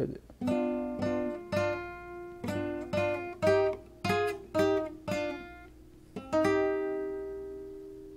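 Nylon-string classical guitar with a capo, fingerpicked: a melodic ornament in thirds, about a dozen plucked note pairs roughly half a second apart. The last pair, about six seconds in, is left to ring and fades away.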